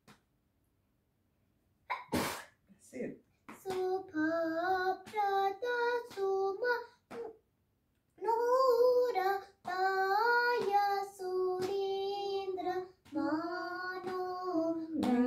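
A young girl singing unaccompanied, in short held phrases with brief pauses between them, starting about three and a half seconds in. About two seconds in there is a brief sharp burst of noise.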